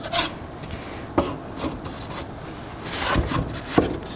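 Plywood hoops and spacer rings being slid down wooden dowels and pressed onto a glued stack: wood rubbing and scraping on wood, with several light knocks as the pieces seat.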